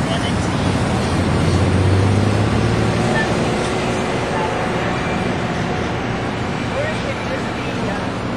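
Street traffic noise: a passing vehicle's engine rumble swells about two seconds in and eases off, over steady road noise, with indistinct voices underneath.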